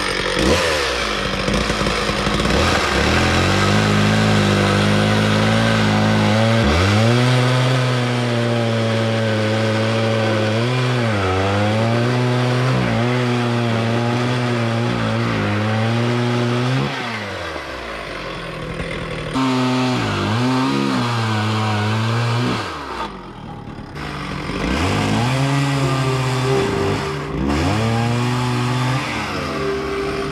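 Two-stroke petrol chainsaw cutting into a wooden log. The engine revs high and its pitch sags and recovers again and again as the chain bites into the wood. It eases off briefly a couple of times before cutting again.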